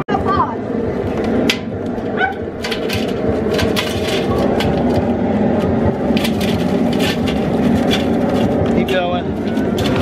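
Live crawfish pouring out of a plastic tub into a perforated aluminum boil basket: many quick clicks and clatters of shells striking the metal and each other. Under it runs a steady low rumble.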